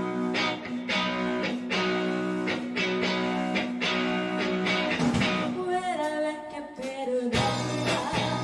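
Live band playing a song's instrumental opening: electric guitars, bass and drums striking chords in a steady rhythm. About five seconds in the chords break off into a falling run of notes, and near the end the full band comes back in.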